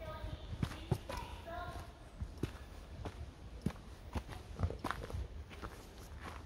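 Footsteps on a stone-stepped forest trail: a series of soft, uneven thuds, about one or two a second.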